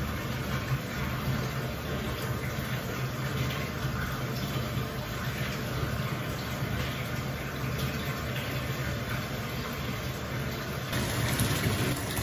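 Bathtub tap running, water filling the tub with a steady rush.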